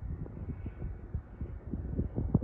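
Wind buffeting the microphone, heard as dense, irregular low thumps and rumble.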